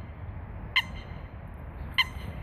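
A bird near the water gives two short, sharp calls, one about three-quarters of a second in and another at the end, over a steady low background noise.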